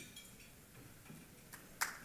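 A quiet pause in a room full of people: faint stirring of the audience with a few small clicks, and a brief louder sound near the end.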